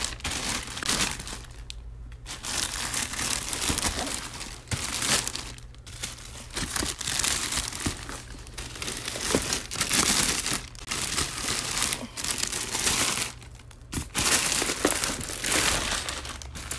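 Clear plastic packaging crinkling and rustling in bursts as a new backpack is pulled out of its wrapping, with a few short pauses.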